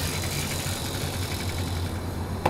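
A steady low mechanical hum with a faint even hiss above it, holding level without change.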